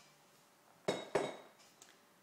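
A large glass bottle set down on a countertop: two quick knocks about a quarter second apart, a little before halfway through, with a brief glassy ring after the first.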